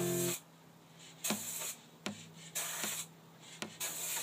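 Aerosol can of spray lacquer hissing in three short bursts of about half a second each, with short pauses between. Acoustic guitar music stops just after the start.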